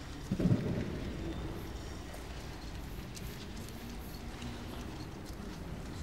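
Room ambience of a large domed reading room: a steady low rumble, with one dull thump about half a second in and faint small clicks scattered after it.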